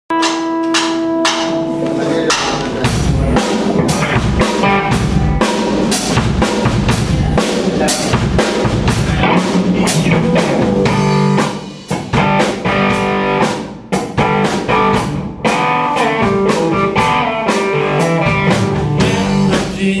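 Live blues band playing an instrumental passage: electric guitar, electric bass and a Tama drum kit keeping a steady beat. The band drops back briefly twice about halfway through.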